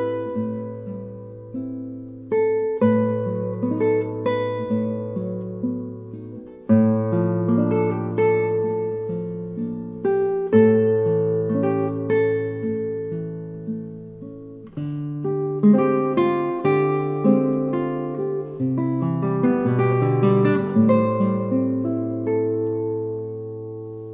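Solo nylon-string classical guitar, fingerpicked: a melody of plucked notes over low bass notes held through each phrase. A new phrase opens with a stronger pluck about every four seconds.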